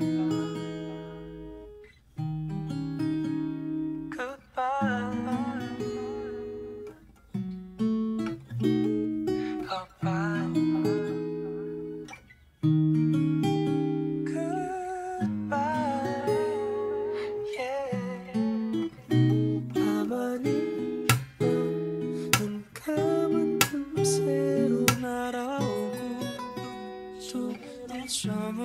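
Taylor GS Mini-E Rosewood Plus acoustic guitar, capoed at the fourth fret, fingerpicking jazzy seventh chords (Cmaj7, B7, Dm7, G13) in phrases that ring and fade. A wordless vocal line with vibrato comes in over the guitar in places.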